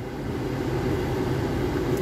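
Steady low hum of a running car heard inside its cabin, with the air-conditioning fan blowing.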